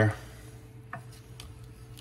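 Wooden spoon stirring a simmering sauce in a stainless steel pan: faint scraping with a few light knocks about one and one and a half seconds in.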